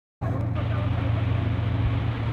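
A vehicle engine running with a steady low drone over a rushing noise from the floodwater, cutting in abruptly just after the start.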